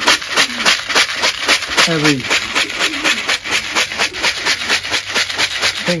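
A spoon stirring a bucket of seed mix for racing pigeons, the grain rattling and swishing in a quick, even rhythm of several strokes a second. The grain is being mixed with a liquid to wet it so that a powder supplement will stick to it.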